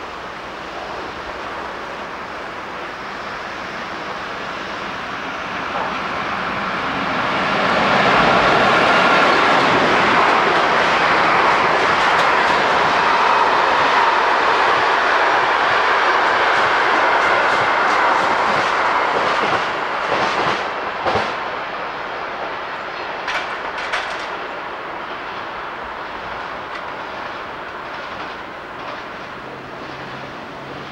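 An electric-locomotive-hauled train of car-carrier wagons and passenger coaches passes: the rumble of wheels on rail builds over the first several seconds, stays loud while the coaches go by, then fades as the train moves away. Sharp clicks of wheels over rail joints come just after the loudest part.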